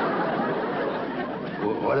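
Sitcom laugh track: a crowd of studio audience laughter running steadily, reacting to the gag, fading a little near the end as a man starts to speak.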